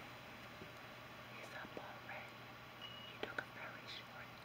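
A woman whispering softly, with a few small sharp clicks a little after three seconds in.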